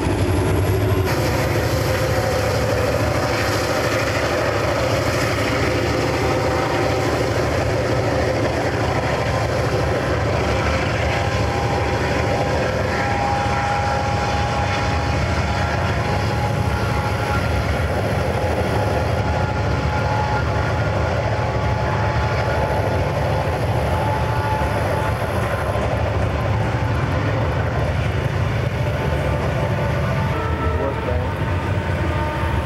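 Freight train of open hopper cars rolling past behind GE diesel locomotives: a steady rumble of wheels on rail, with faint thin whining tones coming and going above it.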